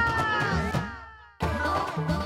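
Title-theme music breaks into a falling, pitch-sliding sound effect: several tones glide downward together and fade away over about a second and a half. The music then cuts back in suddenly.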